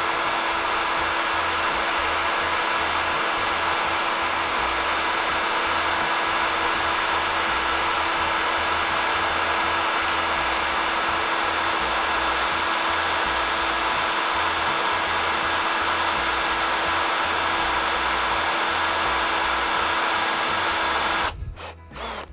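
Makita HP457D 18 V cordless drill running at a steady speed in low gear (speed 1), a 3 mm bit cutting slowly into a metal plate under light pressure, with a steady whine. It stops abruptly about a second before the end.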